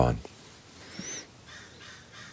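A bird calling about a second in: a short high chirp that rises and falls in pitch, with a fainter one near the end, heard over quiet room tone.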